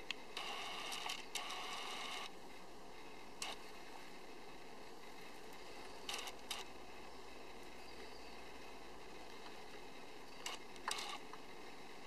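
Fingers pressing and rubbing the Kia Sportage R's steering-wheel control buttons: a rustle of about two seconds near the start, then a few short clicks, over a faint steady hiss.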